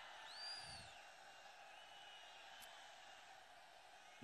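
Near silence: a faint hiss with a brief, faint whistle-like tone rising and falling about half a second in, and faint thin tones later.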